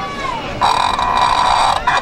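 A puppeteer's voice making a comic sound for a hand puppet: a short falling cry, then a harsh, buzzy, steady-pitched noise held for just over a second that stops abruptly.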